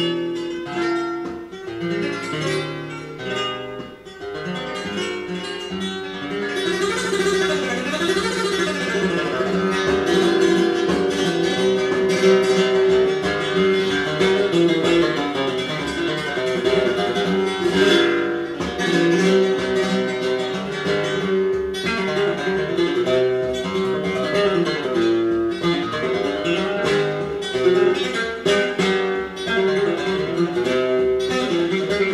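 Flamenco acoustic guitar music with dense, fast runs of notes, played back over hi-fi loudspeakers in a room.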